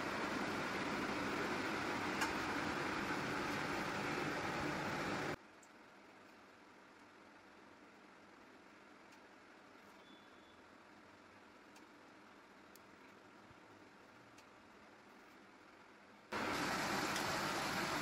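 Steady kitchen background noise that cuts abruptly to near silence about five seconds in and returns just as abruptly near the end.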